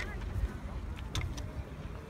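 Outdoor ambience of low wind rumble and handling noise on a phone microphone, with a sharp click at the start and two lighter clicks a little after a second in, while clothes on plastic hangers are moved along a rail.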